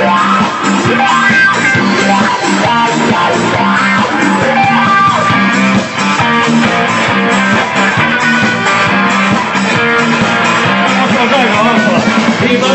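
Live rock band playing an instrumental passage led by a Stratocaster-style electric guitar over bass and drums, with a few bent guitar notes near the end.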